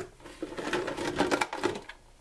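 Small hard-plastic toy animal figures clattering and clicking against each other and the plastic bucket as a hand rummages through them, in quick irregular clicks.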